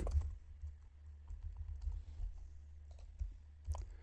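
Faint typing on a computer keyboard: scattered key clicks over a low steady hum.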